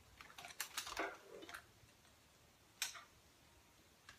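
Faint handling noises: a cluster of small clicks and rustles in the first second and a half, then one sharper click about three seconds in, as hair is gathered by hand and a curling iron is picked up.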